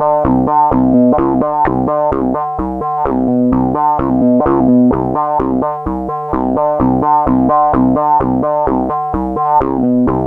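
Korg MS-20 analogue synthesizer playing a self-running, semi-generative groove: a fast, evenly repeating pattern of pitched notes over a low part, many notes with a quick falling sweep in tone. There is no sequencer and no effects; the synthesizer produces every sound itself.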